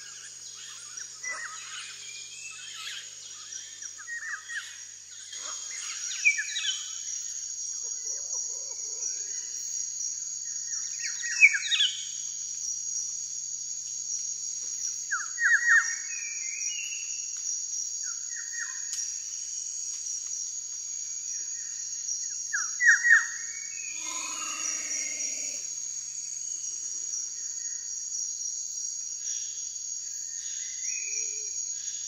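A steady, high-pitched chorus of insects with birds chirping over it: many short calls, some falling quickly in pitch, a few of them loud, and a lower call that drops in pitch late on.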